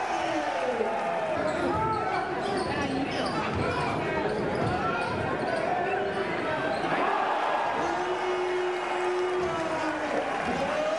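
Basketball game in a gym: the ball bouncing on the court among a constant crowd murmur of voices, with a held voice tone near the end.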